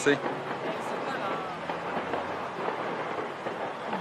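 Steady rushing outdoor noise with no distinct blasts, and a faint distant voice about a second in.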